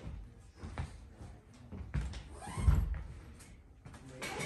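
A few dull knocks and thumps, the loudest about two and a half seconds in.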